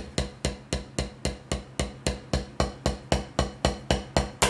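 Wooden drumsticks striking a Vater rubber practice pad in steady, evenly spaced strokes, about five a second. The strokes are wrist-driven rather than finger-driven.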